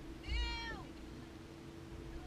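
A person's high-pitched squeal: one short cry, about half a second long, that rises a little and then falls away.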